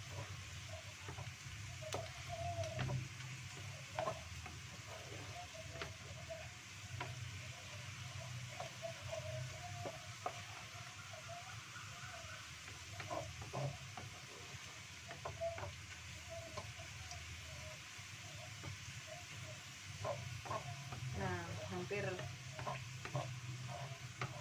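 Sliced shallots sizzling as they fry in oil in a wok, with a wooden spatula scraping and knocking against the pan as they are stirred, many short knocks throughout.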